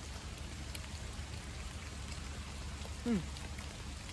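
Steady rain falling around the microphone, an even hiss with scattered drops pattering close by.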